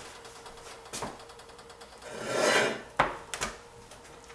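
Raw chicken breasts being put from a cutting board into hot pans greased with cooking spray: a short swell of sizzle a little past the middle, then a few sharp knocks of the board and chicken against the pan.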